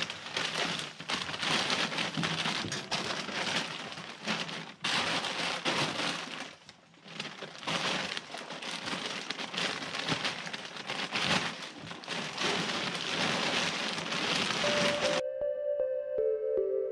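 A feed bag rustling and crinkling as it is shaken and emptied, with grain feed pouring out into a wheelbarrow, in a continuous loud rattle with a brief lull about seven seconds in. It cuts off abruptly near the end, where soft music begins.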